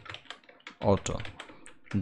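Computer keyboard typing: a quick run of keystrokes.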